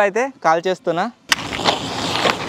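A lit firecracker string hissing and crackling, with a few sharp cracks, starting about a second in after voices.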